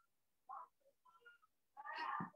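Faint, short, pitched vocal calls: a brief one about half a second in and a louder, longer one near the end.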